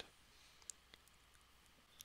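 Near silence with one faint, short click about two-thirds of a second in.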